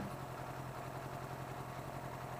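A motorcycle engine idling steadily, low in level.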